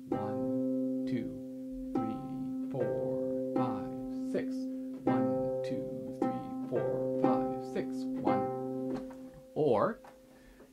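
Concert harp played slowly, with plucked notes struck about every 0.8 s and left ringing over a held low note. The right hand plays triplets against duplets in the left, a three-against-two rhythm.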